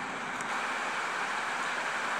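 A pause in speech filled by steady, even background hiss.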